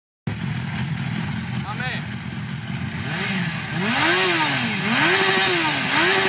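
Suzuki Bandit inline-four motorcycle engine with an aftermarket exhaust, idling steadily at first. About three seconds in, it is revved in repeated throttle blips, the pitch rising and falling roughly once a second and getting louder.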